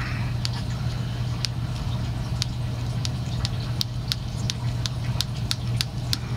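Tying thread being wound tight over bucktail on a fly-tying vise, giving sharp light ticks about two a second, a little quicker in the second half, over a steady low hum.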